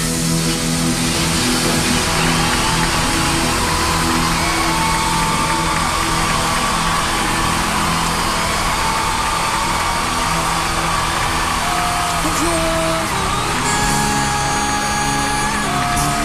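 A live rock band plays a song's instrumental intro with sustained chords, under a large arena crowd cheering and screaming.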